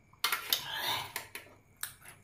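Eating utensil clinking and scraping against a bowl during a meal: sharp clinks about a quarter second in, a scrape of about half a second, then a few light clicks near the end.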